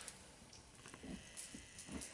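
Faint, soft rustling of a thick woollen crocheted afghan being moved and handled, a couple of low soft shuffles about halfway through and near the end.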